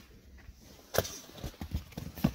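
Quiet handling sounds from gear being shifted about: one sharp knock about halfway, then a few lighter taps.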